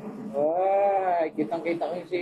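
A voice holding one long, high, bleat-like note for about a second, rising then falling in pitch, followed by quick speech.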